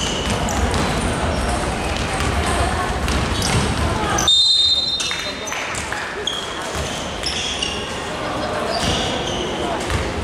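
Basketball being dribbled on a wooden court in a large hall, under players' shouts and chatter. A short, shrill referee's whistle blast comes about four seconds in, stopping play.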